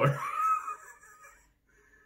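A person's voice trailing off in the first second, followed by near silence.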